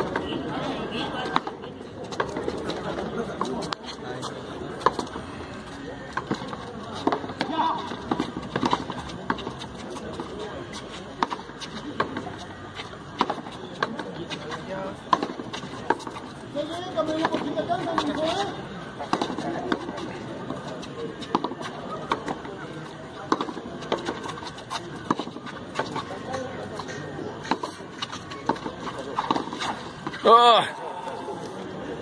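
Hard pelota ball struck by hand and smacking against the concrete frontón wall in a rally: sharp cracks every couple of seconds, over steady crowd chatter.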